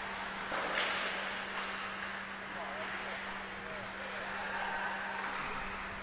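Ice hockey rink game sound: skates scraping and gliding on the ice with faint distant shouts, over a steady low hum.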